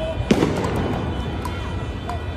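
A single sharp explosive bang about a third of a second in, trailing off in an echo over steady street noise.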